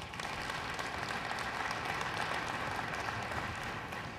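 Large audience in a big hall applauding, a steady dense clapping that eases slightly near the end.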